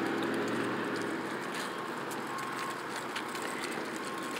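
Road traffic passing: car engines and tyres on the road make a steady hum that eases off a little after the first second.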